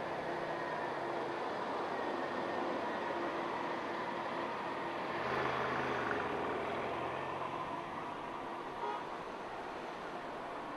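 Cars moving slowly through a parking lot: a steady hum of engines and tyres that swells as a vehicle passes about halfway through, with a short knock near the end.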